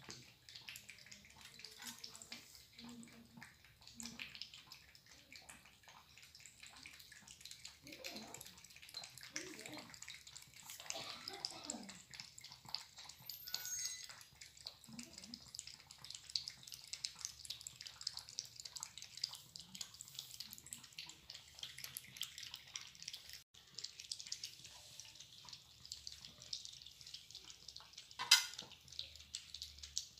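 Two cats lapping milk from plates: a faint, quick, continuous run of small wet licking clicks, with one sharper click near the end.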